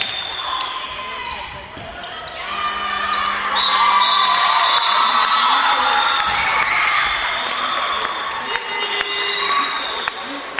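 Handball game in a sports hall: the ball bouncing and short thumps on the court under high-pitched shouting and cheering from players and bench, getting louder about two and a half seconds in, echoing in the hall.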